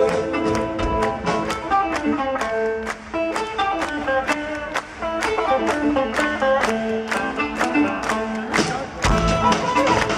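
Live band playing an instrumental passage with no singing: plucked string instruments over a steady beat of drum and percussion hits.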